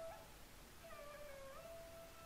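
Faint background music: a slow, soft wind-instrument melody that slides between sustained notes.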